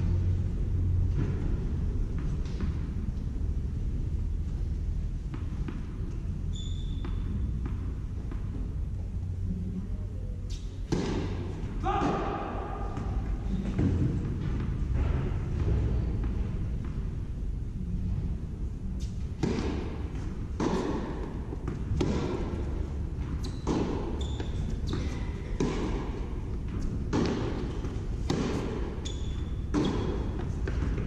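Tennis rally in a reverberant indoor hall: sharp racket strikes and ball bounces about once a second, starting about two-thirds of the way in, over a murmur of crowd voices.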